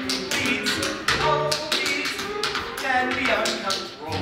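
Tap dancing: tap shoes strike the stage floor in rapid, uneven runs of taps over musical accompaniment.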